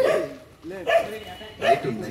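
A dog barking in short, separate barks, a little under a second apart.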